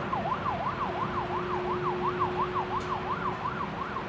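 Emergency vehicle siren in fast yelp mode, its pitch sweeping up and down about three times a second, heard at a distance over traffic. A steady low tone runs underneath and stops shortly before the end.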